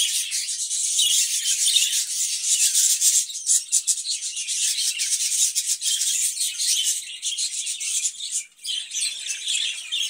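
A cage of budgerigars chattering: a continuous dense, high-pitched twittering of rapid chirps and clicks.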